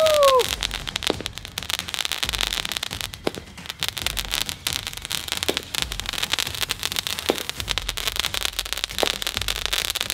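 Ground-launched firework sending up columns of golden sparks: continuous dense crackling and hissing, with a sharper pop about every two seconds.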